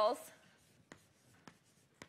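Chalk on a blackboard as words are written: light scratching with a few short, sharp ticks, about three in two seconds.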